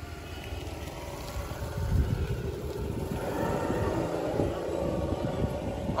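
Wind buffeting the microphone, with the rumble of a passing road vehicle that swells in the middle and then fades.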